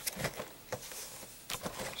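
Handling of a cardboard figure collection box: a few light taps and rustles, with one near the start, one in the middle and a couple near the end.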